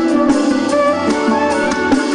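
Live band music with a drum kit and guitars.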